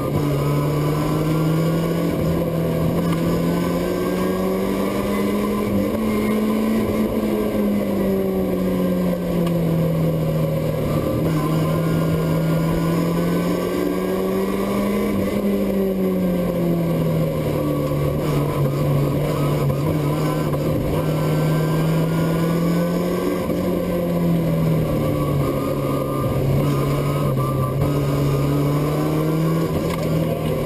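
BMW E36 rally car's engine heard from inside the cabin, held in second gear on a downhill run. Its note rises and falls slowly as the car speeds up and eases off for the bends, with no gear changes.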